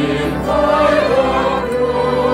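A hymn being sung, the voices holding long notes with vibrato over a steady instrumental accompaniment.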